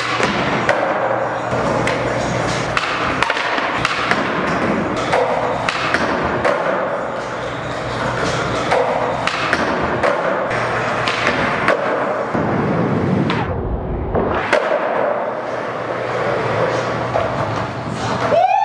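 Skateboard wheels rolling on a smooth concrete floor, with repeated sharp clacks of tail pops and landings, under background music.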